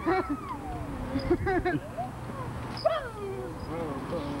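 People's voices making high, wordless sounds that slide up and down in pitch, in several short bursts.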